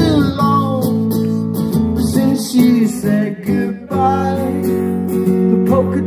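Live acoustic guitar strummed in an instrumental passage between sung lines, chords ringing on, with the tail of a sung note at the very start.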